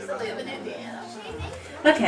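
Indistinct chatter of several people talking in a room between songs, over a low steady tone that stops about two-thirds of the way in; a louder voice starts right at the end.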